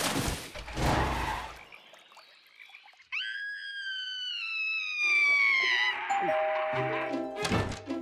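Cartoon soundtrack: a brief noisy clatter, then a long whistle-like tone that slides slowly down in pitch starting about three seconds in, and a tune of short repeated notes takes over around the middle.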